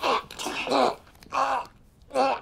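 A man's choked groans as he is held in a chokehold: three short voiced cries in under two seconds.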